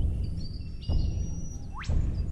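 Outdoor ambience: a low rumble that swells about once a second, under thin high bird chirps, with a quick rising whistle near the end.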